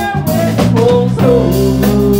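Live band playing, with electric guitar, electric bass and a drum kit, and a man singing into a microphone.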